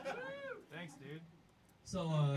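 Indistinct voices between songs: a drawn-out call that rises and falls in pitch in the first half second, then short, mumbled voice fragments and a brief lull before speech starts near the end.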